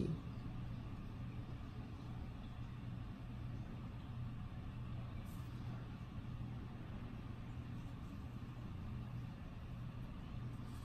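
Steady low background hum, with faint strokes of a felt-tip marker drawing lines on graph paper.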